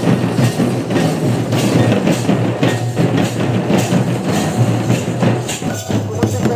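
Live Santali folk percussion: large brass hand cymbals clashing with drums in a steady, continuous rhythm.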